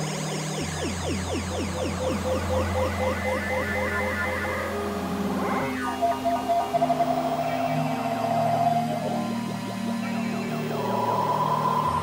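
Eurorack modular synthesizer playing an ambient glitch patch: quick repeating pitch sweeps over a low bass drone that comes in just after the start and drops out near the end, with held higher tones taking over in the second half.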